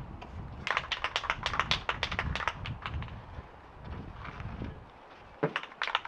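Aerosol spray-paint can being shaken, its mixing ball rattling in quick clicks, about ten a second for a couple of seconds, then again more briefly.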